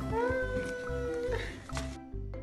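Background music with a steady beat, and over it one long high vocal call that rises in pitch and then holds for about a second and a half.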